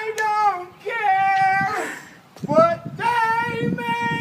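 A high-pitched voice singing or calling out in drawn-out, held notes with short slides in pitch, pausing briefly about halfway through. A low rumble joins in for the second half.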